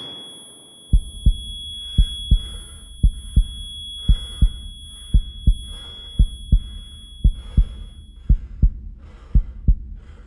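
Heartbeat sound effect: a double thump about once a second over a low drone, starting about a second in. A thin, steady, high ringing tone sounds over it and stops about eight seconds in.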